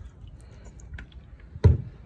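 Handling noise around a plastic tub of water as MTG is poured in: scattered light clicks over a low rumble, with one sharp thump about three-quarters of the way through.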